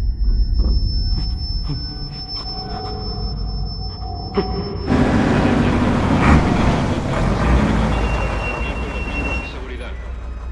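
A steady high ringing tone over a low rumble, then about five seconds in a sudden cut to the loud rumble and road noise of a heavy armoured truck driving through a gate.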